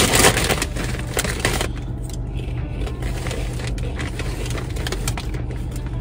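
A foil bag of Lay's Wavy Ranch potato chips crinkling loudly as it is opened, for about the first two seconds. After that the crinkling stops and a steady low car hum is left.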